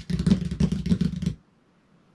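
Hands drumming fast on a tabletop: a rapid run of knocks with a low thud, lasting about a second and a half.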